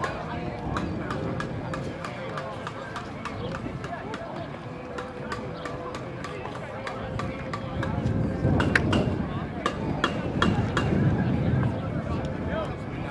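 Indistinct voices around an outdoor soccer pitch during a stoppage in play. A run of sharp clicks sounds throughout, and the voices grow louder after about eight seconds.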